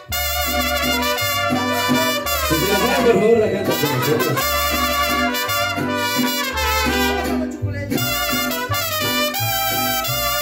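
A mariachi band strikes up a song all at once, with trumpets playing the melody over a steady bass line.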